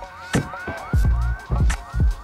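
Background music with a steady kick-drum beat and a short rising, siren-like synth figure repeated about four times a second.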